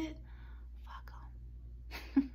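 A woman whispering faintly after speaking, ending near the end with a short kiss smack as she presses her fingertips to her lips.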